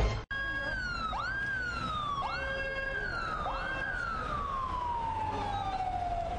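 Ambulance siren wailing: four cycles, each a quick rise in pitch followed by a slow fall, the last fall long and drawn out, over a low background rumble. A burst of music cuts off abruptly just before it.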